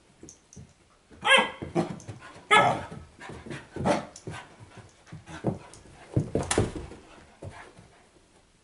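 Puppies playing rough with each other, barking: two loud barks about a second in and a second later, then more shorter barks over the next few seconds.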